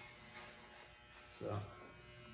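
Electric hair clippers with a guard running with a low, steady buzz as they cut the hair on the side of the head.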